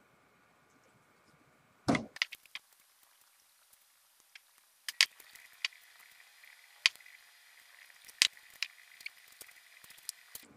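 Scattered sharp taps and knocks on a tabletop from handling a glass of melted candy melts and setting candy-dipped strawberries down. The loudest is a short cluster about two seconds in, followed by single taps every second or so.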